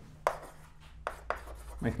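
Chalk on a blackboard, writing letters: a few short, sharp taps and scrapes, the loudest about a quarter second in and again around one second in.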